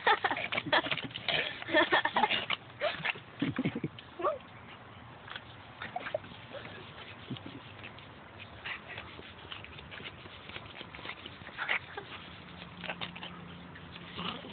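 Small Yorkshire terrier growling and snapping as it bites at a hand air pump. The sound is thick with quick sharp noises for the first four seconds, then drops to a few scattered short bursts.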